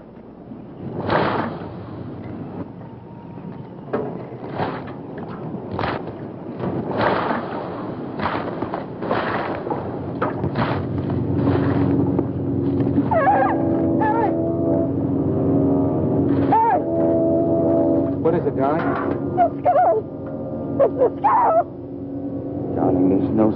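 A rake scraping through ashes and brush in strokes about one a second. About twelve seconds in, a dramatic film score of sustained chords swells in, with a woman's wavering cries over it.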